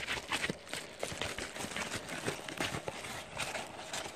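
Paper packaging being handled: a padded mailer envelope rustling and crackling, with a scatter of small irregular taps.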